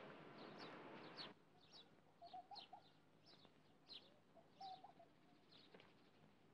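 Faint outdoor birdsong: small birds give short, falling chirps a few times a second, and a hen clucks in two short runs. A faint rushing noise underneath stops about a second in.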